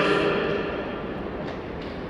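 A voice over a stadium public-address system dies away in echo, leaving a steady wash of open-stadium background noise.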